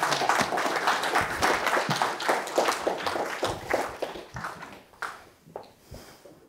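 Audience applauding, many hands clapping at once; the clapping thins out and fades away over the last two seconds.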